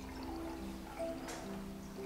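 Quiet background music with sustained low notes, under a faint trickle of water being poured from a bottle into a cup.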